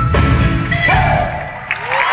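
A Bolivian Andean folk band playing live with a steady beat and a high held wind note, ending its song about a second in; the audience then breaks into cheers and gliding shouts.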